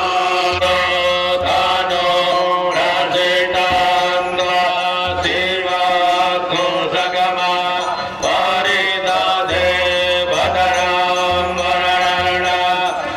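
Hindu devotional mantra chanting, voices holding long pitched lines in phrases that break and restart every second or so.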